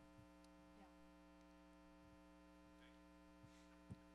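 Near silence in a pause between speakers, with a steady faint electrical mains hum.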